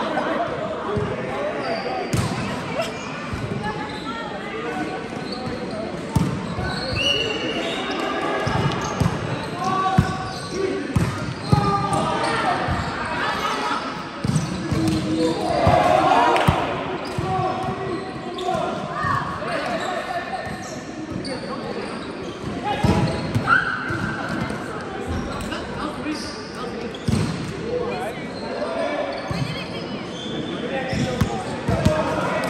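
A volleyball being hit and passed again and again, with sharp slaps and thuds of hands and arms on the ball at irregular intervals. Players' voices and calls sound throughout, echoing in a large hall.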